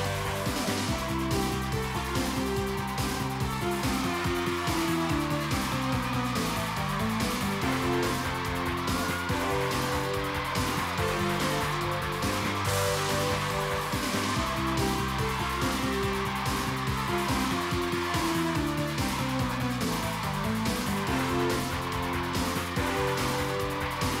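Upbeat background music with a steady beat and a melody of held notes.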